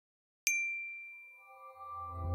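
A single bright, high chime strikes about half a second in and rings out, fading away over the next second. Near the end soft sustained music tones and a low drone begin to swell in.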